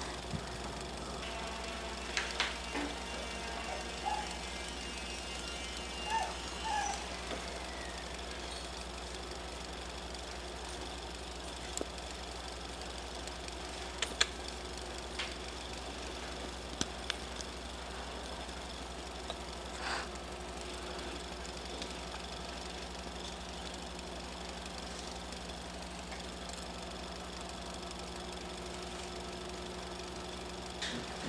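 A steady low hum with a few short high notes and taps in the first several seconds, then scattered faint sharp clicks.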